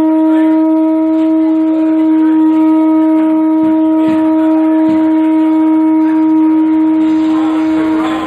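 Conch shell blown as a horn, holding one long, loud note at a steady pitch.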